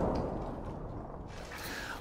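The low rumbling tail of a heavy punch-impact sound effect in an anime fight, dying away steadily after the hit.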